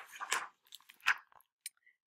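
A page of a picture book being turned: a quick series of paper rustles and crinkles over the first second and a half, tailing off into a few faint ticks.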